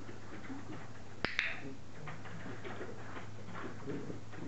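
Two sharp clicks in quick succession about a second in, the press-and-release of a dog-training clicker marking the dog's move. Around them, faint soft scuffing of a small dog moving about on a tiled floor.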